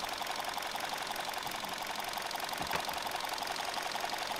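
Chevy Sonic engine idling, with a fast, even ticking over a steady running sound.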